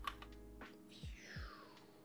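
Quiet background music with soft held notes and a low beat about every 0.7 seconds, a falling sweep in its second half, and a few faint computer clicks.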